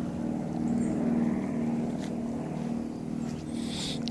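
A steady motor hum, a low drone with several level tones, with a short hiss near the end.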